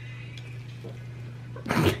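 A steady low hum with a few faint clicks from metal tongs serving salad into bowls, then a short, loud burst of laughter near the end.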